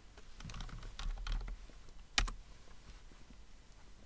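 Typing on a computer keyboard: a quick run of keystrokes, then one louder single keystroke a little over two seconds in, as a program name is entered in a search box and launched.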